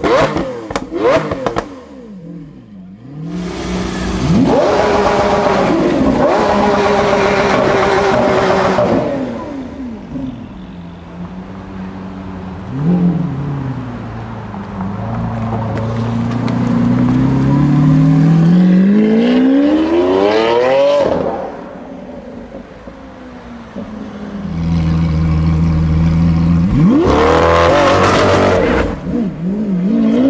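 Lamborghini Aventador LP700-4's V12 through a Capristo aftermarket exhaust, very loud: quick sharp rev blips at first, then the engine held at steady high revs for several seconds. Later it pulls away with the pitch climbing for several seconds, is held at steady high revs again, and rises once more near the end.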